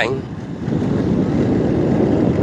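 Motorbike riding along a rough dirt road: a steady rumble of engine and road noise, with wind on the microphone.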